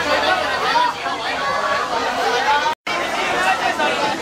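Several people talking and calling out over one another in a steady chatter, cut off by a brief gap of silence about three-quarters of the way through.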